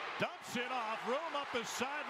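Speech only: a television sports announcer calling a football play.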